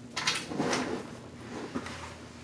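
Plastic scraping and rubbing as a homemade marker's plastic barrel is handled and pressed together, with a short click near the end.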